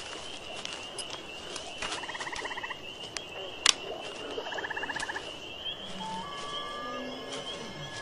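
Night-time wildlife ambience: a steady high chirring drone, with two rapid rattling trills about a second long each and a single sharp click between them.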